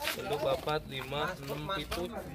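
Indistinct talking voices of people nearby, not clear enough to be transcribed.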